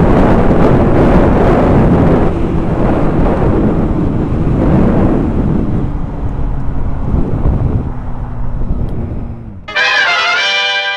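Motorcycle at freeway speed, recorded by a helmet-mounted camera: heavy wind rush over the microphone with the engine's steady drone underneath, its pitch dropping near the end as the bike slows. Just before the end a brass fanfare cuts in abruptly.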